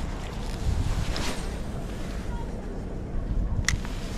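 Wind buffeting the microphone, a steady low rumble, with one short, sharp high chirp near the end.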